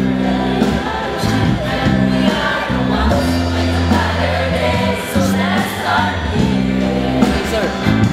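A group of voices singing together over a live band, with sustained bass notes that change every second or so.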